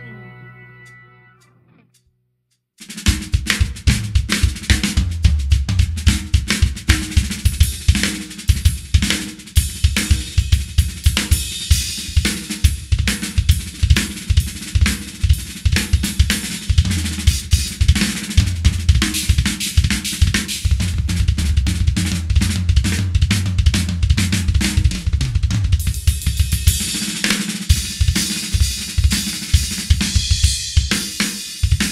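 The rock backing track fades out over about two seconds, then after a short gap a drum kit plays alone: a fast, busy solo of kick drum, snare, toms and crashing cymbals.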